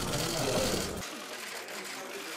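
Press cameras' shutters clicking in rapid bursts while the group poses, under a man's voice saying 'kolay gelsin' in the first second; about a second in, the deeper sound drops out and the clicking goes on more thinly.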